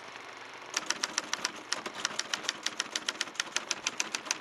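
Typewriter keys clacking in a quick, even run of strikes, about six a second, starting about a second in. The clacking goes with caption text typing itself onto the screen.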